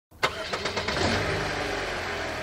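A car engine starting: a sharp click, a brief quick crank, then the engine catches and runs steadily.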